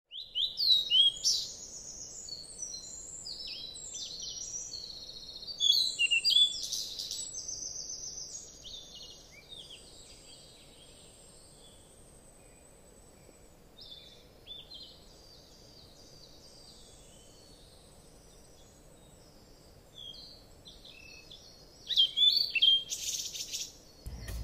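Birds singing and chirping, many short high calls that slide in pitch, loudest in the first few seconds and again near the end, with sparser, fainter calls in between.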